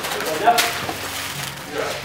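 Brief indistinct talking, with a short burst of voice about half a second in and another near the end.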